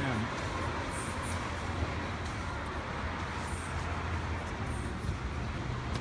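A steady low mechanical hum with an even rushing noise over it, holding the same level throughout.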